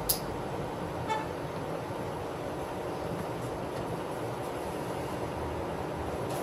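Steady outdoor parking-lot and traffic noise, with a sharp click right at the start and a short, high beep about a second in.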